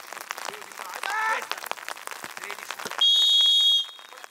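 A training whistle blown once, a steady shrill blast of under a second near the end, the loudest sound here. Behind it are players' shouts and a football being kicked about on wet grass.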